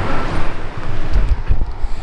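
Highway traffic: a steady rush of passing vehicles, with a heavy low rumble a little past a second in.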